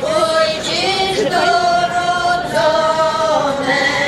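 A women's Polish folk vocal group singing unaccompanied in harmony, drawing out long held notes with brief breaks between phrases.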